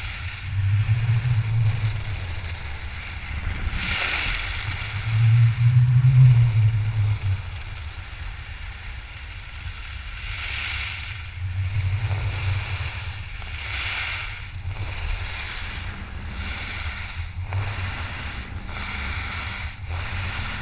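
Wind rushing over a GoPro's microphone as a skier carves down groomed snow, with low buffeting and a scraping hiss of ski edges on the snow that swells with each turn every few seconds.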